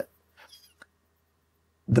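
A pause in a man's speech, filled only by a faint, short intake of breath and a small mouth click, before he starts talking again near the end.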